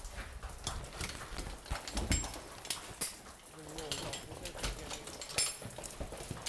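Irregular footsteps and scuffs of boots on rock and loose stone as people move along a mine passage, with a couple of light metallic clinks from climbing gear.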